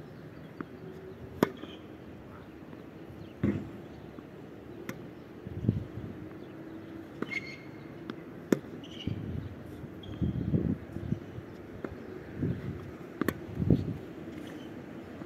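Tennis rally: sharp pops of the ball struck by racket strings and bouncing on the hard court, several spread over the stretch, the loudest about a second and a half in and again about eight and a half seconds in. Duller, lower thuds fall between the pops.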